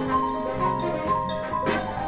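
Student jazz ensemble playing an up-tempo jazz tune: a melody line of held, changing notes over electric keyboard, electric bass and drum kit, with sharp drum and cymbal strikes several times a second.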